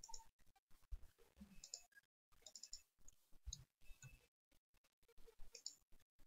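Faint clicking from a computer mouse and keyboard: scattered short clicks in small clusters.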